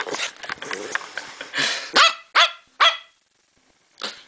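Staffordshire bull terrier giving three short barks about half a second apart, each falling in pitch, starting about two seconds in, after a couple of seconds of noisy rustling close to the microphone.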